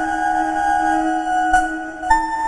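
SEELE Abacus software synth playing its 'Disturbing Flute' preset as a held chord: a steady low note with higher tones above it. The upper notes change with a brief click about one and a half seconds in.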